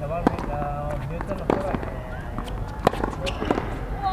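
Tennis ball struck by racquets in a doubles point: a sharp pop from the serve about a quarter second in, then more sharp hits every second or so as the rally goes on. Voices murmur behind the hits.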